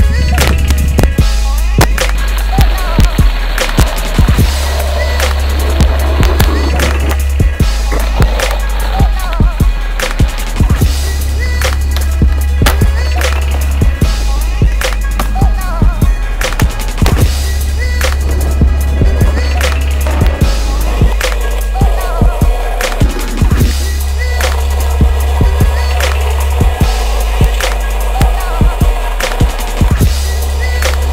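Skateboard tricks on concrete, with wheels rolling and repeated sharp clacks of the board popping and landing, heard over a music track with a heavy bass line.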